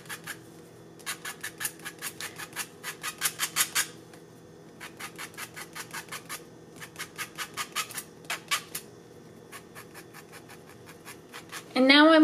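Quick, repeated scratching strokes of a sculpting tool's tip brushed across fabric as it sweeps fabric-marker dye out from the centre of a fabric flower. They come about five a second in two runs, the first stopping about four seconds in and the second about nine seconds in, with a few scattered strokes near the end.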